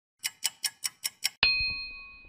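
Logo sound effect: six quick, clock-like ticks, about five a second, then a single bright bell ding that rings on and fades.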